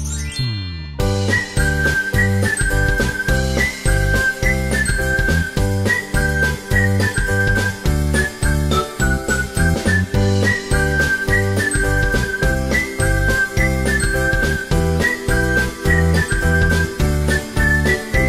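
Upbeat background music: a steady beat with a high, repeating melody. It starts about a second in, just after a falling sweep.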